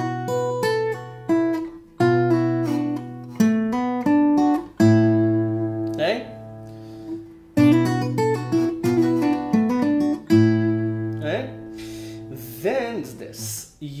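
Takamine steel-string acoustic guitar played fingerstyle: a lead lick of hammer-ons and pull-offs on the treble strings over an open A bass note, played slowly in several short phrases, each opening with a sharply plucked bass note that rings on.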